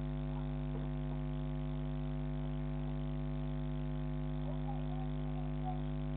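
Steady electrical hum: a constant stack of evenly spaced tones, the kind of interference a security camera's built-in microphone circuit picks up.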